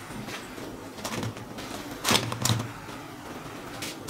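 Crisp fried sweet potato chips tipped from a wire-mesh strainer, clattering onto a plate in several short rustling bursts about a second apart.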